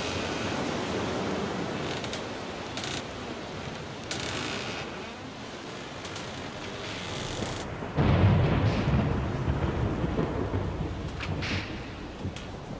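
A steady rushing noise, then a sudden deep rumble about eight seconds in that slowly dies away, with a few sharp clicks near the end.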